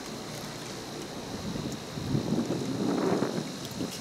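Wind buffeting the microphone, a rushing noise that gets louder about halfway through, over a faint steady high whine.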